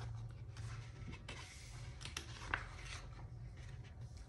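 Faint rustling and rubbing of a picture book's paper pages as they are handled and turned, with a few light taps, the clearest about two and a half seconds in.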